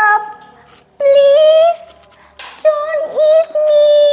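A girl's high-pitched, drawn-out crying voice playing the frightened mouse pleading not to be eaten, in a few long held wails with short pauses between them.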